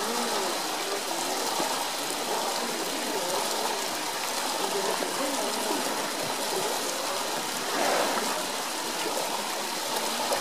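Steady running and sloshing water in a polar bear's pool as the bear swims and paddles about with a floating traffic cone, with a slight swell about eight seconds in.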